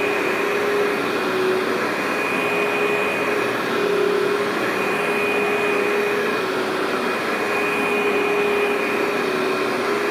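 Workhorse upright vacuum cleaner running steadily as it is worked over low-pile commercial loop carpet. It gives an even whoosh with a steady motor whine that wavers slightly in pitch now and then.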